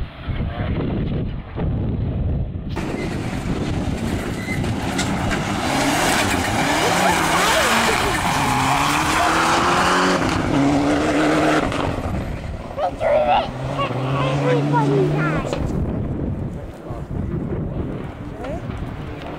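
Rally car driven hard on a gravel forest stage: about three seconds in a loud rush of engine and tyre noise comes up, the engine note rising and falling through revs and gear changes, then it fades toward the end.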